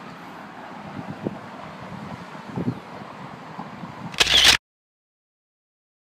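Faint steady outdoor background noise with a few soft ticks, then one loud, short camera shutter click about four seconds in. After the click the sound cuts off to dead silence.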